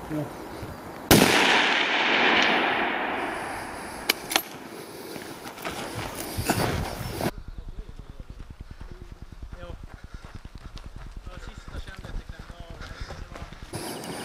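A single rifle shot about a second in, its report rolling away in a long echo for about two seconds, followed a few seconds later by a couple of short, sharp cracks. At about seven seconds the sound cuts abruptly to a quieter stretch of fast, light ticking.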